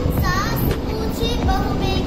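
A young girl's voice in a sing-song, chanting delivery.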